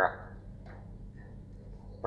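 Low, steady hum and faint hiss from an old recording, with one faint click under a second in.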